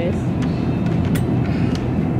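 Steady low rumble of supermarket background noise, with a few light knocks from a plastic shopping basket and milk carton being handled.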